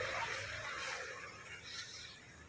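A low, even hiss of background noise that fades over the two seconds.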